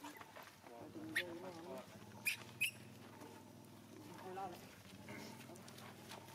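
A voice talking quietly, broken by three short, sharp high squeaks, over a steady low hum that sets in about a second in.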